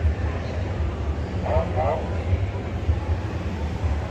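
Steady low rumble of convention-hall background noise, with a brief faint voice in the background about a second and a half in.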